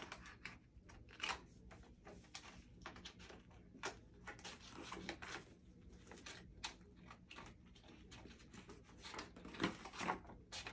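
Small scissors snipping through paper in short, irregular cuts, with the paper rustling as it is turned.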